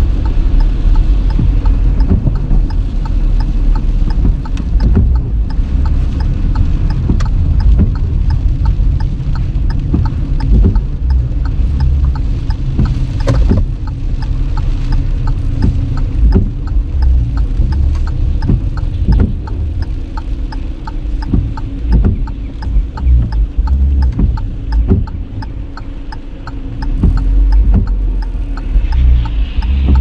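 Car cabin noise while driving slowly on a wet road and slowing to a stop: a steady low rumble with many scattered sharp taps.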